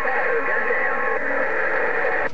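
A President HR2510 radio's speaker playing a received transmission on 27.085 MHz: a distant station's voice, faint and garbled under hiss and steady whistling tones, squeezed into a narrow, tinny band. Some of the whistles stop about a second in.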